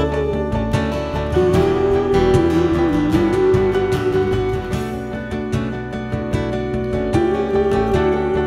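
Live band music led by strummed acoustic guitars, with a stage keyboard. A held, wavering melody line runs over it and dips about three seconds in.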